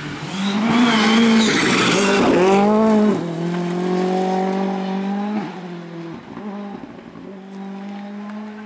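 Ford Fiesta rally car at full throttle through a gravel corner: loudest in the first three seconds, with a hiss of gravel and tyres over the engine, then the engine note climbs and drops as it changes up through the gears and fades as the car pulls away, with brief lifts off the throttle near the end.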